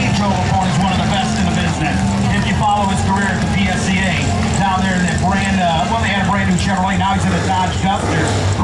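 Drag-racing pro stock V8 engines idling at the starting line, a loud steady low drone with a slight lope. A public-address announcer's voice runs over it.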